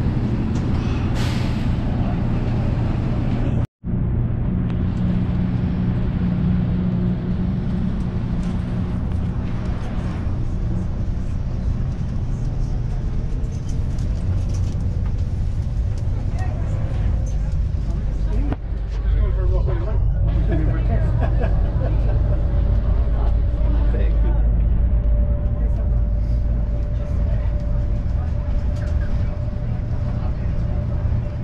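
Inside an automated airport people-mover train running along its guideway: a steady low rumble, with a steady whine joining about two-thirds of the way through.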